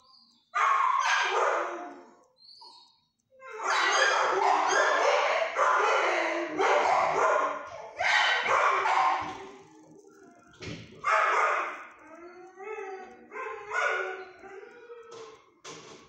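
Dogs barking in a shelter kennel: a short burst, then a dense run of overlapping barks for about six seconds, then shorter, sparser bouts toward the end.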